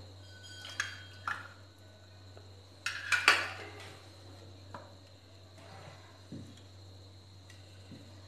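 Utensils knocking on kitchenware: a steel spoon clinks against a small bowl as lemon juice is tipped out, then a ladle stirs and knocks in a pan of tempering liquid. There are a few short, scattered clinks, the loudest about three seconds in.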